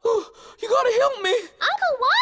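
A cartoon character's wordless voice: three short vocal sounds with gasps and wavering pitch, the last one gliding up and then down.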